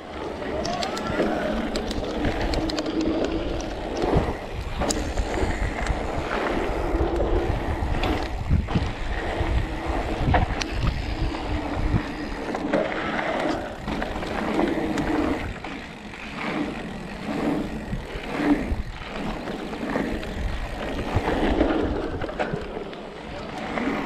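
Electric mountain bike rolling fast down a gravel and dirt trail: tyres crunching over the surface, the frame and chain rattling with frequent knocks over bumps, and wind on the microphone. A motor hum comes and goes under the rolling noise.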